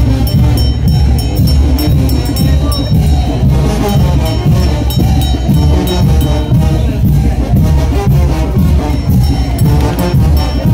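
Live brass band playing chinelo brinco music, with a steady, driving beat.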